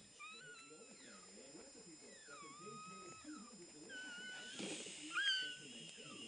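Newborn chihuahua puppy crying: about four thin, squeaky, wavering cries, one drawn out for about a second, with a brief rustle near the end.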